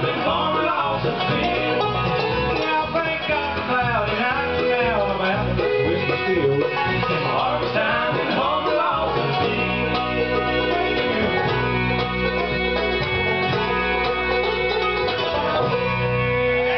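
Live bluegrass band playing: five-string banjo, acoustic guitar, mandolin, bass and fiddle, with voices singing at the microphones in the first half. In the second half the band moves into long held notes.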